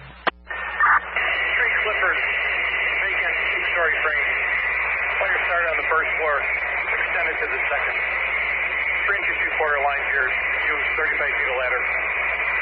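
Fire department radio traffic heard through a scanner: a short click and burst about a second in, then voices that are hard to make out over constant static with a thin steady tone.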